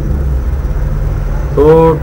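A steady low hum fills a pause in the talk, and a man's voice comes in briefly near the end.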